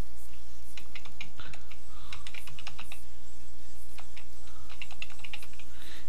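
Typing on a computer keyboard: a run of irregular key clicks as a terminal command is entered, over a steady low hum.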